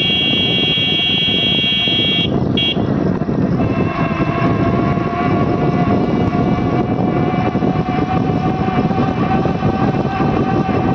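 Steady rush of wind and road noise from a bicycle rolling along a paved road. A sustained high tone with many overtones sounds over it until about two seconds in and then breaks off. From about four seconds a lower steady tone rises slowly in pitch.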